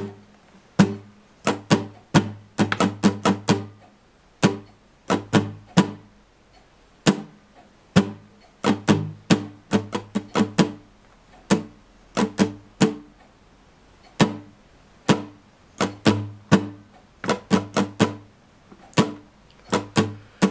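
Acoustic guitar strummed slowly with the strings muted, so each down- and up-stroke is a short percussive chuck with almost no ringing. The strokes fall in a repeating strumming pattern: clusters of quick strokes separated by short gaps.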